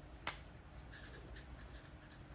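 Felt-tip marker writing, faint short scratchy strokes, after a light click about a quarter of a second in.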